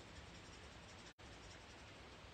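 Near silence with faint scratching of an alcohol marker stroking and blending colour on cardstock; the sound cuts out for an instant about halfway through.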